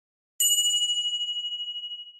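A single bright bell ding from a notification-bell sound effect, struck about half a second in and ringing on with a clear tone that slowly fades.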